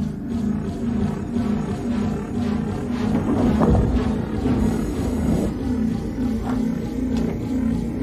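Film score with a low pulsing figure repeating two to three times a second, joined by a deep growling rumble that swells in the middle.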